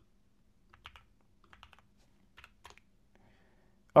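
A few faint keystrokes on a computer keyboard as a short terminal command is typed, the key taps scattered over about two seconds.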